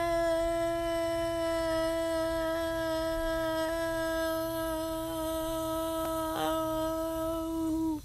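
A person's voice holding one long, steady note for about eight seconds, with a brief waver near the end before it stops.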